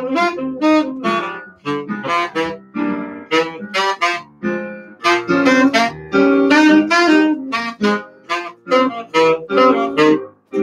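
Saxophone playing a jazz melody in short, quick phrases over piano accompaniment.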